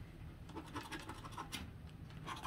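Plastic scratcher tool scraping the coating off a scratch-off lottery ticket in quick, faint, irregular strokes.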